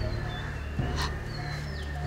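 Short, high-pitched animal calls, a few quick chirps with falling pitch, over a low steady drone, with a sharp click about a second in.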